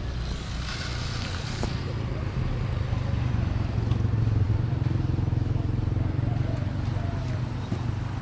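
Motor vehicle engine running steadily with a low, even hum.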